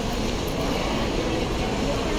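Busy airport terminal ambience: a steady din of many people's indistinct chatter and movement in a large hall, over a low rumble.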